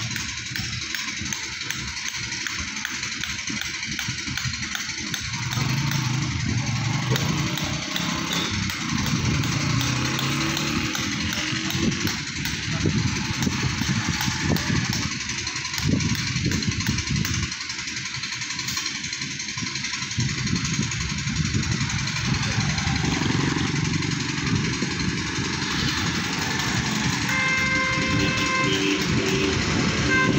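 Road traffic: motorcycle and tractor engines running as the vehicles come along the road, louder from about six seconds in. A vehicle horn sounds briefly near the end.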